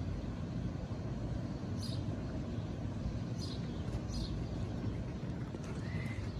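Steady low outdoor rumble, with a few brief faint high ticks scattered through it.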